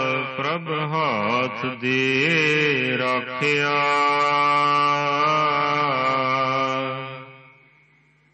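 Gurbani verse of the Hukamnama chanted by a single male voice in a slow, melodic recitation. The voice bends through a phrase, then holds one long note that fades out near the end.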